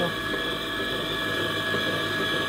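Stand mixer motor running steadily on its lowest speed with a steady whine, its beater turning through thick sponge-cake batter in a steel bowl.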